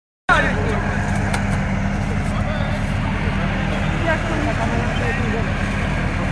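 Engine of a Volvo BV 202 tracked carrier running steadily under load as it crawls through deep mud, a constant low drone.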